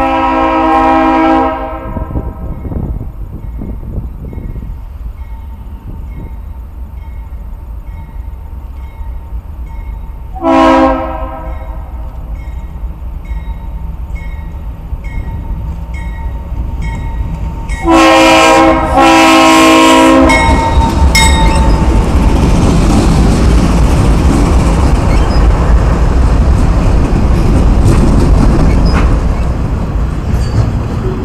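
Norfolk Southern diesel freight locomotive sounding its multi-chime air horn for a grade crossing in four blasts: a long one at the start, a short one about ten seconds in, and two close together around 18 to 20 seconds. A crossing bell dings about once a second under the first blasts. From about 20 seconds the locomotives and freight cars pass close by with a loud steady rumble of engines and wheels on rail.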